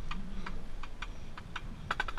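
Amplified metronome clicking in a fast, steady pulse, several clicks a second, over low wind rumble on the microphone. It is counting off the tempo for a brass line about to play.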